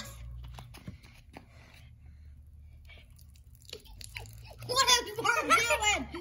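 Mostly quiet for about four seconds, with scattered small clicks and crackles. Then, near the end, a child's excited voice breaks in without words.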